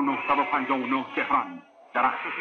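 A voice speaking, with a short pause near the end.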